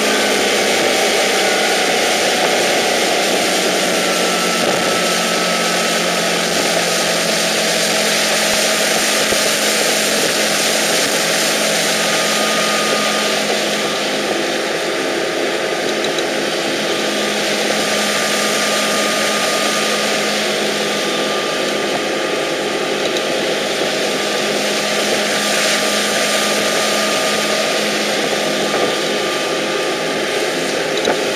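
Tow boat's engine running steadily at speed, mixed with wind and the hiss of the boat's wake and spray.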